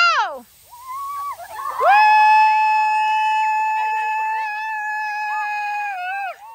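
Children's voices on a playing field: a short falling cry, then one high voice holding a long, steady shout for about four seconds over fainter chatter from the other kids.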